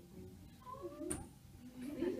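A toddler's short, high-pitched vocal sound rising in pitch, with a sharp click about a second in.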